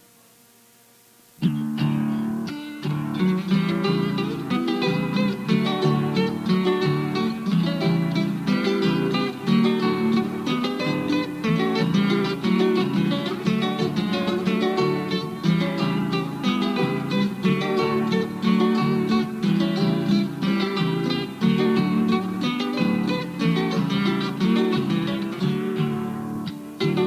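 Two acoustic guitars playing the instrumental introduction of a Cuyo tonada, with quick plucked melody lines over strummed chords. It starts suddenly after about a second and a half of quiet between tracks.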